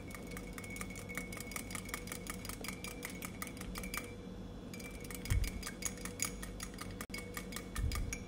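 Small metal wire whisk beating a balsamic and olive-oil dressing in a glass measuring jug: fast clinking strokes against the glass, several a second, with a short break about four seconds in.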